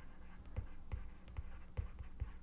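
Stylus tip tapping and sliding on a tablet's glass screen while handwriting a word, heard as a series of soft, short clicks about every half second.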